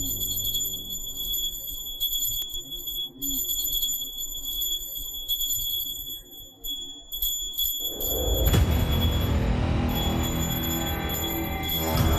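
Small brass puja hand bell ringing steadily during an aarti, over soft background music. About eight seconds in, a loud swell of dramatic score music takes over.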